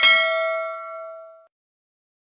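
A single bright bell ding, the notification-bell sound effect of a subscribe-button animation. It is struck once and rings out over about a second and a half.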